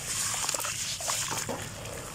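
Hands squeezing and kneading wet, gritty sand under water in a plastic basin: wet squishing and sloshing with small crackles and pops as the sand breaks up into mud.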